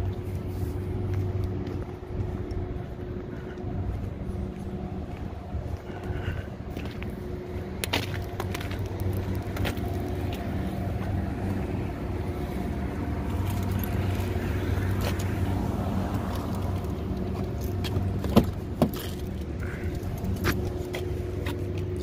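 A steady low engine hum with a few sharp clicks and keys jangling.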